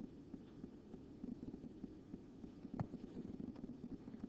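Quiet low background rumble with faint soft taps and one sharper click about three seconds in, from a stylus writing on a tablet.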